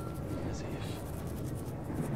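Steady low rumble of a moving train carriage, with faint indistinct voices over it.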